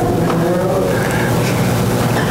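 A congregation laughing together, many voices at once, as a steady wash of laughter.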